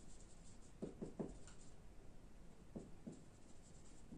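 Faint writing sounds: short scratchy strokes of a pen or marker in small groups, about three a second in and two more near three seconds.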